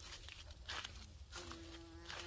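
A flying insect buzzing close by, a steady hum that starts about one and a half seconds in, after a short rustle of footsteps less than a second in, over a low rumble.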